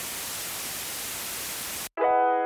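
TV static sound effect used as an edit transition: a steady hiss of white noise that starts abruptly and cuts off suddenly just before the end.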